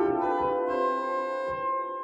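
Hauptwerk virtual pipe organ played from a four-manual console, with notes entering one after another and building into a held chord. The notes are released about three-quarters of a second in and fade away in a long reverberation.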